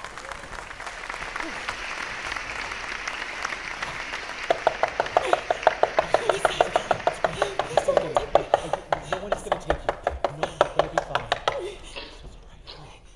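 Audience applause; about four and a half seconds in, a steady beat of sharp claps comes in over it at about four a second and stops just before the end.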